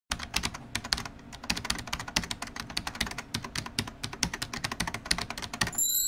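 Fast, irregular clicking of typing on a computer keyboard, with a rising swoosh near the end.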